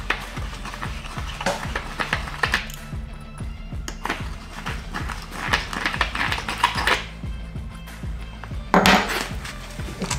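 A hand deburring reamer scraping around the inside of a freshly cut copper tube end, giving a run of short, irregular metallic scrapes and clicks, over background music.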